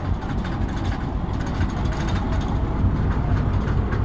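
Diesel locomotive engine running with a steady low rumble as the locomotive moves past.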